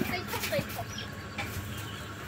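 A few faint, short clucks, like a chicken's, in the first second, over quiet background noise.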